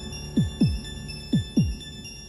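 Suspense film score: a heartbeat-like double bass beat, each hit falling in pitch, sounding twice, over a steady held synthesizer drone.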